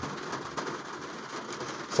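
Faint steady background hiss between spoken phrases, with no distinct sound event.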